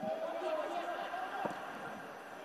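Faint shouts and calls of footballers on the pitch, carrying across an empty stadium, with a single sharp knock about one and a half seconds in.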